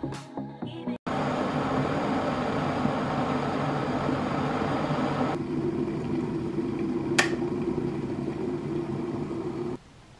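Electric glass kettle boiling, a dense, steady rumble and hiss that thins to a lower rumble partway through. There is a single sharp click about seven seconds in, and the sound stops abruptly just before the end. It is preceded by about a second of background music.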